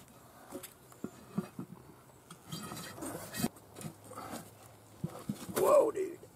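Scattered knocks and rubbing as a tire is handled and pushed down onto a steel wheel by hand. A loud, strained grunt of effort comes near the end.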